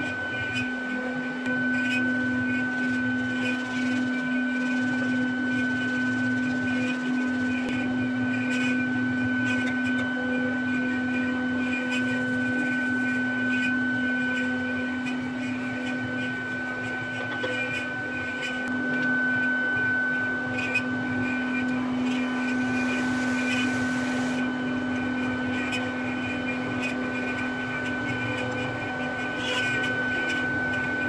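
A workshop machine running steadily, a constant low hum with a thin high whine over it, unchanging throughout. Small clicks and rustles of wooden parts being handled sound over it now and then.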